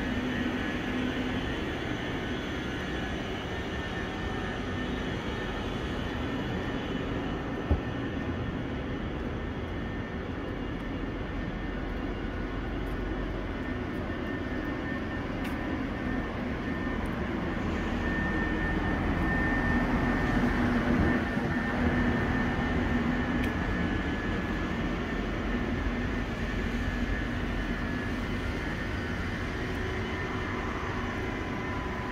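A ČD class 640 RegioPanter electric multiple unit standing at a platform, its fans and auxiliary machinery giving a steady hum with a whine that swells a little about two-thirds of the way through. One sharp click about eight seconds in.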